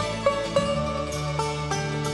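Instrumental passage of an Irish folk ballad: a melody of quick plucked notes over held low notes, with no singing.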